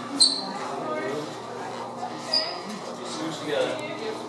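Party guests chattering in a room, several voices overlapping with no single speaker clear. Two short, sharp high-pitched squeaks cut through, the first just after the start and the second about two seconds later.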